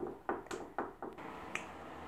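A run of sharp clicks, about three a second, fading out after about a second and a half.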